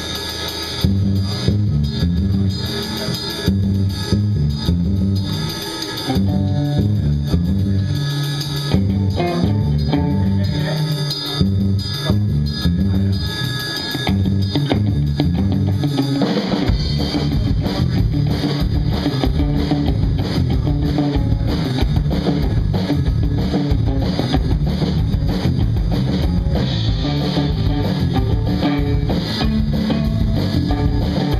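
A live rock band playing an instrumental: electric bass and drum kit drive a repeating riff with electric guitar, and about halfway through the playing turns denser and heavier.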